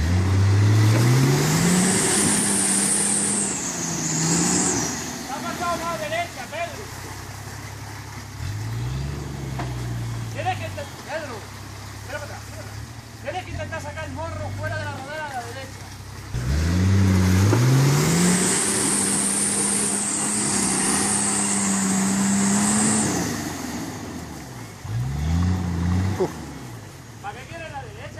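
Nissan Patrol GR Y60 4x4 engine revving hard under load in a deep mud rut: two long high revs, one at the start and one from a little past the middle, each held for several seconds, with shorter revs between.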